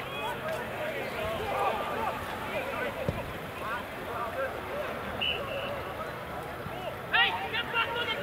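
Scattered shouts and calls from spectators and players at a rugby match, with a louder burst of shouting about seven seconds in as a player makes a break.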